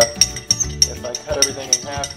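Metal spoon stirring a glass of borax solution, clinking rapidly against the glass, each clink ringing briefly.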